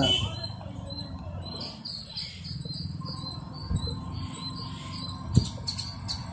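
Rapid, high-pitched chirping or squeaking repeating in the background, with two soft knocks in the second half.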